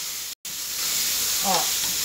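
Chopped pork sausage and fatback sizzling in olive oil and garlic in a hot pressure cooker pot, stirred with a spoon. The sound drops out for an instant just under half a second in.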